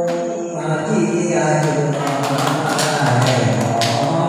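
A man singing unaccompanied into a microphone in a slow, chant-like Vietnamese giao duyên (courtship exchange) folk style, holding long notes.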